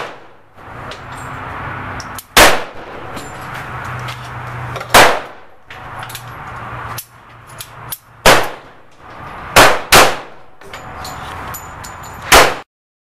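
Ruger LCP .380 pocket pistol fired five times, several seconds apart at first, then the last two shots in quick succession.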